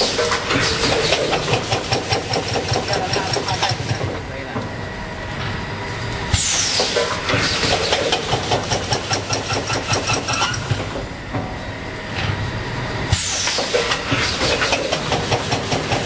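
Tobacco packing machine running through a repeating cycle. Each cycle opens with a sudden hiss that falls in pitch and is followed by several seconds of rapid mechanical clicking and rattling. New cycles start about six and thirteen seconds in.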